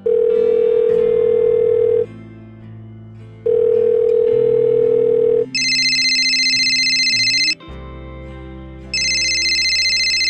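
Telephone ringing over soft background music: a low steady ring twice, each about two seconds long, then a higher, shriller electronic ring twice.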